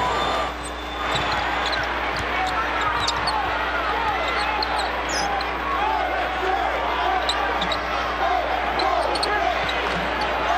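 A basketball being dribbled on a hardwood court, with frequent short sneaker squeaks, over a steady background of arena crowd noise.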